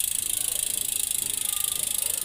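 Bicycle rear freehub ratchet buzzing as the rear wheel spins freely: a fast, even stream of clicks that holds steady, cricket-like.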